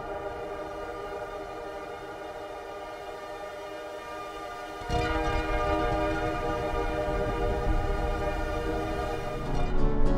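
Synthesizer drone from the 'Resonant Ripples' snapshot of Reaktor's Metaphysical Function: a sustained resonant chord of many steady overtones, playing with its driving sample turned down. About five seconds in it steps up louder as a rumbling lower layer comes in.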